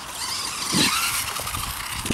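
Electric 1:10 RC buggy driving fast over grass: a motor whine and rushing tyre noise, loudest a little under a second in, with a brief rising and falling whine and a low thump as it bounces.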